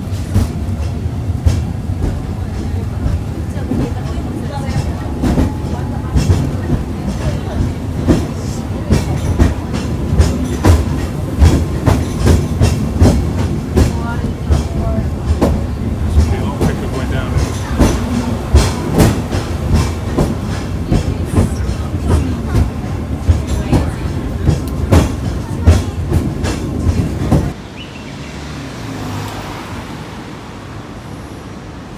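Peak Tram funicular car running downhill, heard from inside the car: a steady low rumble of wheels on rail with frequent, irregular sharp clacks. Near the end it cuts suddenly to a quieter, smoother vehicle hum.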